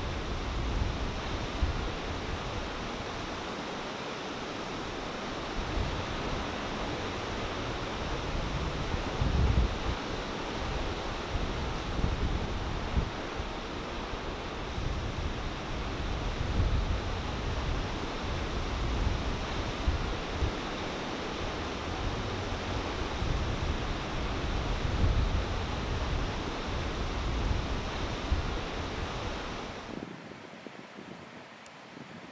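Steady rushing wash of ocean surf, with irregular low rumbles of wind buffeting the microphone.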